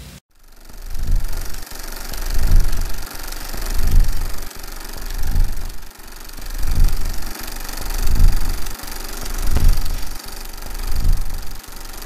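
A low, rhythmic throbbing rumble that swells and cuts off about every second and a half, over a steady hiss: the opening of a punk music video.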